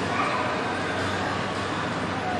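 Steady background of voices with short, repeated animal calls over it.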